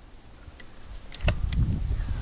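Wind rumbling on the microphone, starting a little over a second in, with a few light clicks around the middle.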